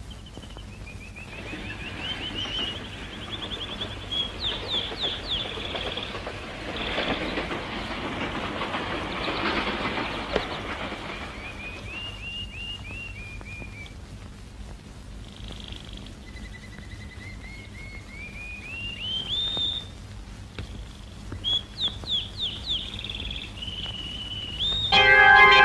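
Birds calling: runs of quick chirps and strings of whistled notes that climb in pitch, over a low steady hum. There is a stretch of hiss in the middle.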